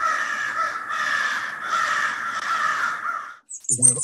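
Sound effect of a flock of crows cawing together in a steady, overlapping din that cuts off abruptly about three and a half seconds in.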